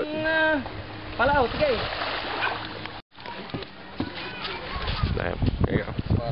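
Two short calls of voices, then, after a break in the sound, scattered knocks as people step onto a wooden-decked outrigger boat, with water splashing against it.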